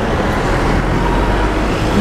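Street traffic: steady road noise with a low engine rumble from passing vehicles.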